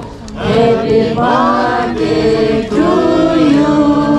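A group of voices, many of them women's, singing together in unison: a slow chant-like song with long held notes.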